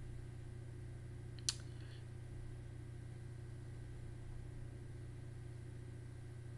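Steady low hum of room tone with a single sharp click about one and a half seconds in.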